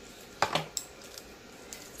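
A sharp plastic click about half a second in, then faint handling sounds, as a lollipop is taken out of its plastic wrapper.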